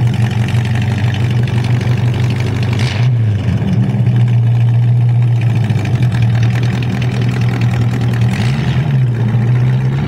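The Chevy 283 cubic-inch V8 of a 1963 Chris Craft Custom Ski idling steadily just after starting. It gets two short blips of throttle, about three seconds in and again near the end.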